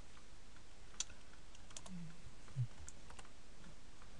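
Computer keyboard keys being typed in a sparse, irregular scatter of light clicks over a faint steady hiss.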